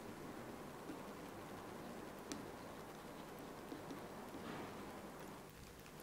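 Faint room tone with a few soft, brief clicks, the clearest about two seconds in.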